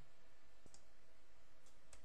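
A few faint computer mouse clicks over a steady low hiss, as on-screen options are selected.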